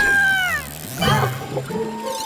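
Cartoon soundtrack of sound effects over music: a pitched, meow-like tone that holds briefly and then slides down, followed by a short burst of sound about a second in.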